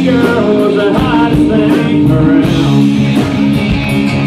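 Live country-rock band playing loudly: electric and acoustic guitars, bass, keyboard and drums, with a lead line of sliding notes over a steady beat.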